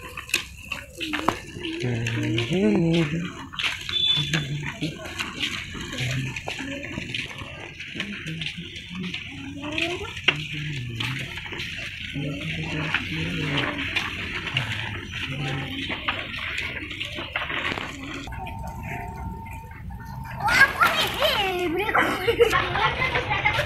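Indistinct talking over a steady rushing hiss, with a louder burst of voices and movement near the end.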